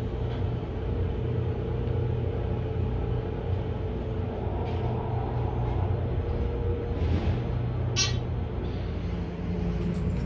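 Steady low hum and rumble inside a closed Dover elevator car, with one sharp click about eight seconds in.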